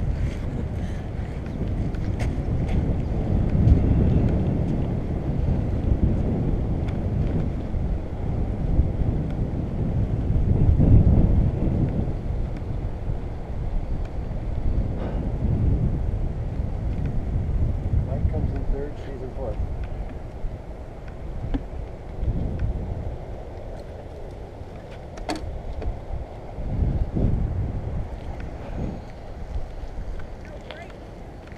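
Wind buffeting the microphone of a bike-mounted camera while riding, a low rumble that swells and fades. It is loudest in the first half and eases off after about twenty seconds.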